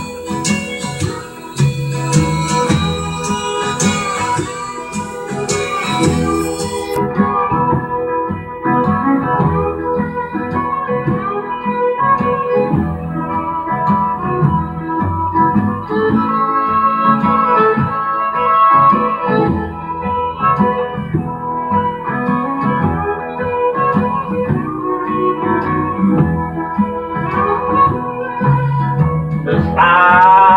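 Instrumental break of a country-music backing track: a sustained, organ-like lead melody over guitar and bass, with no vocal.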